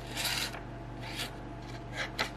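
Serrated rescue-knife blade rasping through a sheet of paper: one scraping cut near the start, then a shorter one about a second in.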